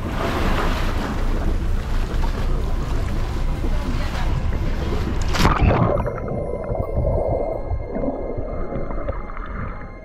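Seawater sloshing and splashing as a snorkeler slides off a catamaran into the sea. About five and a half seconds in, a sharp splash and the sound turns muffled: underwater gurgling of bubbles.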